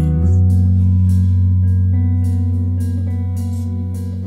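Live band music in an instrumental stretch without vocals: long held low bass notes under guitar, the harmony shifting a quarter-second in.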